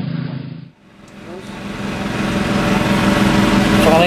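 A small engine running steadily. It comes in about a second in and grows louder.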